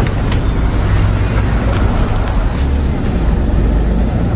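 City bus engine running with a steady low rumble.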